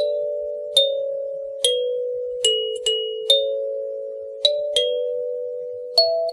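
Kalimba playing a slow, gentle melody as background music: single plucked notes, each ringing on and fading, about eight in all.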